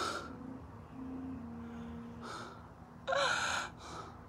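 Three short breathy bursts of air, the last and loudest about three seconds in with a brief squeak in it, over a faint steady hum.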